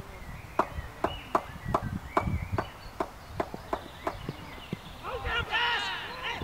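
A steady run of sharp ticks, about two and a half a second, and near the end a loud shout from the cricketers as the batsmen set off running between the wickets.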